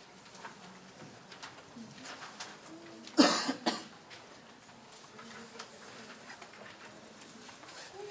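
A person coughing in a quiet hall: one loud cough about three seconds in, followed at once by a smaller second one. Otherwise faint room tone with light rustles.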